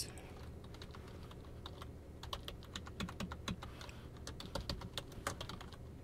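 Typing on a computer keyboard: a faint, quick, irregular run of key clicks, starting about a second and a half in.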